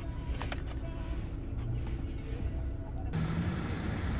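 Hyundai Accent's 1.6-litre four-cylinder engine idling, a steady low hum heard inside the cabin with a couple of light clicks from the keys in hand about half a second in. After about three seconds the same idle is heard from outside the car.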